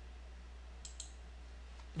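Two quick computer mouse clicks a little under a second in, close together, over a steady low hum.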